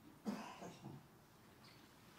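A brief cough about a quarter of a second in, followed by two fainter throat sounds.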